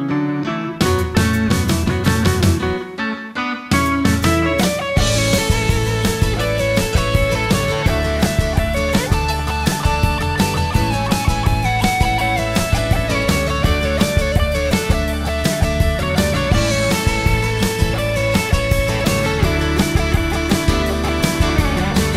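Live southern rock band playing: a guitar passage with short breaks for the first few seconds, then the full band with bass and drums comes in about four seconds in, an electric guitar melody running over it.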